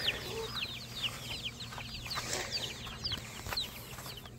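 Young poultry peeping: a quick run of short, high chirps, each sliding down in pitch, several a second.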